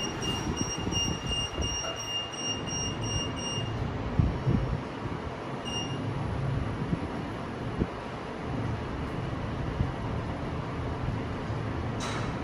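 Kone MonoSpace machine-room-less lift car travelling down, with a low steady rumble of ride noise and occasional light knocks. A steady high-pitched tone sounds for the first few seconds, cuts off just before four seconds in, and comes back briefly about six seconds in.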